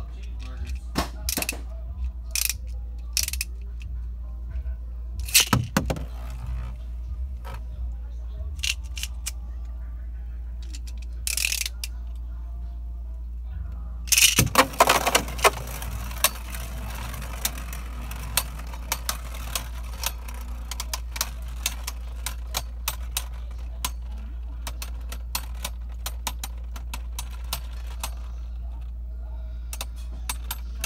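Scattered clicks and knocks in the first half, then a burst of loud clattering about fourteen seconds in as two Beyblade spinning tops land in a plastic stadium. After that comes a long, rapid run of small clicks as the tops spin, clash and scrape against each other and the stadium walls.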